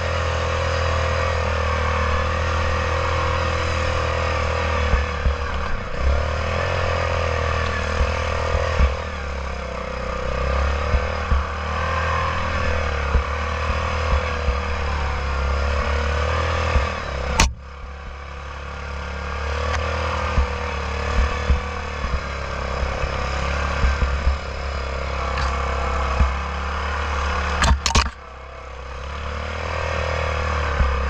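Yamaha Grizzly 660 ATV's single-cylinder four-stroke engine running steadily under load while riding through snow, its pitch wavering with the throttle, with frequent short knocks and rattles from the machine over bumps. A sharp click about halfway and a double click near the end, each followed by a brief dip in the engine sound.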